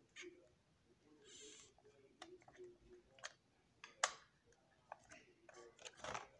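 Faint handling of a plastic toy capsule, scattered light clicks with a brief rustle a little over a second in, as it is pried at by hand to open it. The sharpest click comes about four seconds in.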